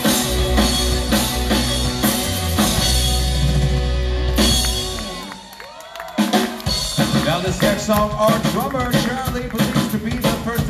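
Live rock band with electric guitars, bass guitar and drum kit. The music fades to a lull about five seconds in, then the drums come back in with a singing voice over them.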